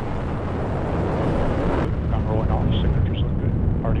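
Steady low rumble of the Atlas V rocket's engines and solid rocket boosters during ascent. Faint launch-commentary voices come in over it in the second half, after a click about two seconds in.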